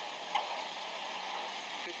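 Steady background hiss during a pause in talk, with one short click about a third of a second in.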